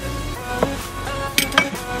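Music plays throughout, with three sharp metallic clinks from metal pieces being handled inside an opened hard case: one about a third of the way in and two close together in the second half.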